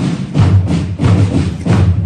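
Music led by drums, with repeated heavy strokes about three a second over a steady low tone.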